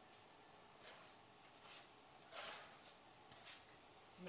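Near silence, with a few faint soft scrapes and rustles as chopped turkey bacon is pushed off a plastic cutting board into a frying pan, the clearest a little past halfway.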